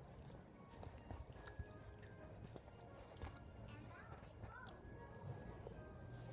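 Near silence, broken by a few faint clicks and a toddler's brief soft vocal sounds a little after the middle.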